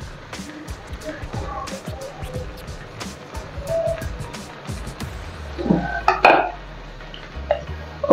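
Shredded chicken being tipped and scraped off a plate into a wok of cooked vegetables, with light taps and clinks of utensil on plate and pan. A short louder sound comes about six seconds in.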